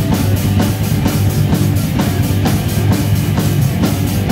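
Heavy metal band playing live: the drum kit keeps a steady, fast beat under sustained guitar and bass.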